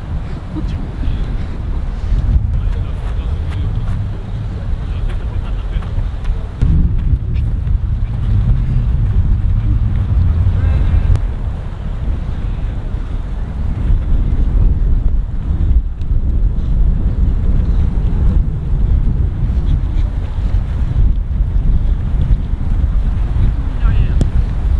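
Wind buffeting the microphone: a loud low rumble that swells and eases without a break.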